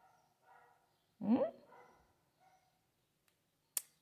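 A woman's single questioning "hum?", rising in pitch, about a second in, in an otherwise quiet small room with a few faint murmurs. There is one short sharp click near the end.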